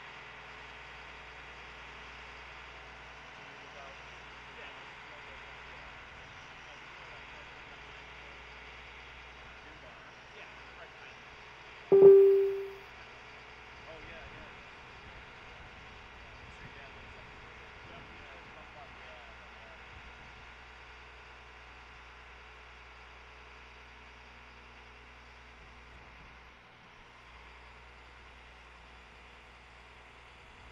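Steady low hum of an idling bucket-truck engine. About twelve seconds in there is one sharp, loud knock that rings briefly.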